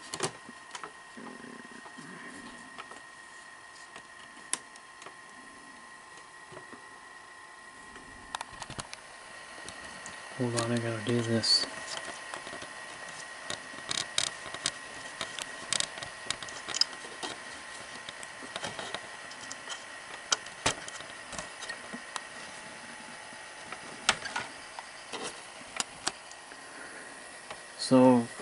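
Scattered clicks and knocks from hands working the plastic chassis and main circuit board of a Sony SL-5000 Betamax VCR as the board is raised, over a steady faint high whine. A brief vocal sound comes about ten seconds in.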